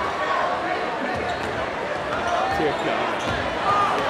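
Sneakers stomping and thudding on a hardwood gym floor as players try to burst balloons underfoot, with a crowd shouting over it.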